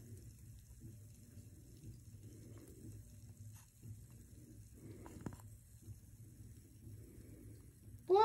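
Near silence: low room hum with a few faint ticks.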